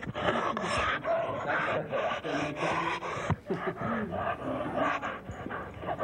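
Dogs up close, breathing hard in quick repeated breaths, with a brief whine about three and a half seconds in.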